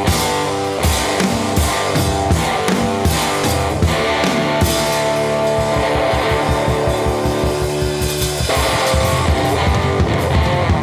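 Live rock played by an electric guitar and a drum kit. The guitar holds sustained notes and chords over the drums, which beat out a fast, even pulse through the middle. The music changes about eight and a half seconds in.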